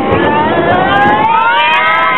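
Steel roller coaster train picking up speed down a drop: its wheels on the track rumble, and a whine of several pitches rises steadily over the last second and a half.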